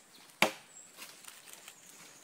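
A machete chopping into wood: one sharp chop about half a second in, followed by a few faint knocks.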